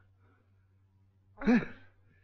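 A single short voiced sigh, 'hai', about one and a half seconds in, over a faint steady low hum of room tone.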